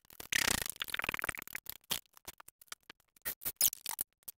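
A steel floor jack being worked under the rear of a car: a rattling metal clatter for about a second and a half, then a string of scattered clicks and knocks.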